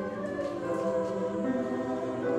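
Mixed choir of women's and men's voices singing together, holding sustained chords that move from note to note.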